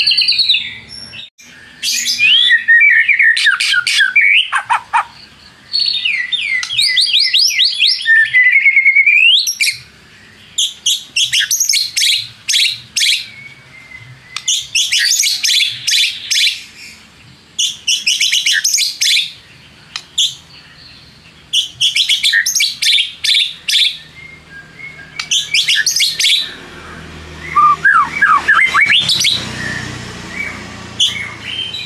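White-rumped shama singing loudly in phrases with short pauses: sweeping whistled notes in the first few seconds and again near the end, and in between repeated runs of fast, rattling notes.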